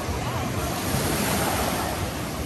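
Ocean surf: small waves breaking and washing up the sand at the water's edge, swelling a little about a second in, with wind buffeting the microphone.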